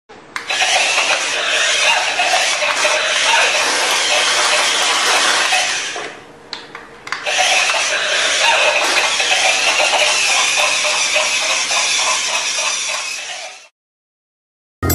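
Small electric gear motor of a battery-powered remote-control walking toy horse, whirring and rattling as it walks. It pauses briefly about six seconds in, then runs again until it cuts off just before the end.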